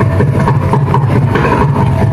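Live Carnatic music on electric mandolins: fast, dense plucked notes over a low, pulsing percussion beat.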